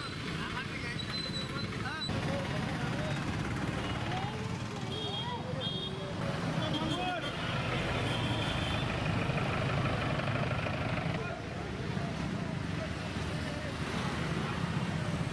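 Busy town-street traffic: motorcycle, scooter and autorickshaw engines running past, with people talking in the street. A few short high-pitched tones sound around the middle.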